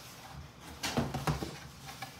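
A package being handled on a kitchen counter: a quick cluster of knocks with a low thud about a second in, amid light rustling.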